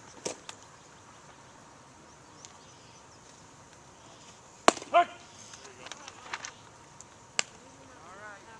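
A pitched baseball popping sharply into the catcher's mitt about halfway through, the loudest sound, followed at once by a short shout. Another single sharp crack comes near the end.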